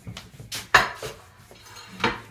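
Dishes and cutlery clattering, several sharp clinks and knocks with the loudest about three-quarters of a second in.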